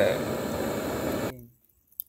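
Handheld butane blowtorch on a gas cartridge, its flame hissing steadily against charcoal as it lights the fire, then stopping abruptly about a second and a half in, leaving near silence.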